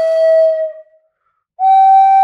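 Solo flute playing slow, held notes. One long note fades out less than a second in, and after a short pause a slightly higher note begins and is held.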